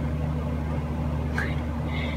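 A steady low mechanical hum made of several held tones, with a brief faint squeak about one and a half seconds in.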